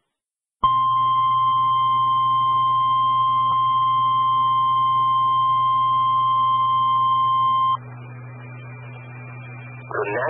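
Steady tone near 1 kHz held for about seven seconds over a low hum, received by radio: the NOAA Weather Radio warning alarm tone that announces a National Weather Service alert. It cuts off abruptly, leaving a quieter hiss with a faint high tone.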